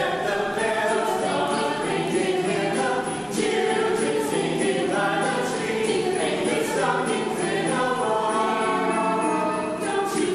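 Mixed choir of men's and women's voices singing together in harmony, holding and changing notes continuously.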